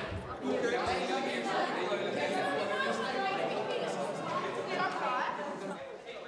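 Indistinct chatter of many overlapping voices in a classroom, with no single voice standing out.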